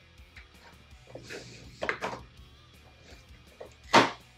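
A cardboard box being torn open by hand: short bursts of cardboard and tape tearing, with the loudest, sharpest rip near the end, over faint background music.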